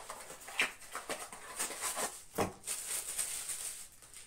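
A small cardboard box being opened by hand and a power adapter taken out of its packaging: irregular rustling, crinkling and small scrapes and clicks, with a thump about two and a half seconds in.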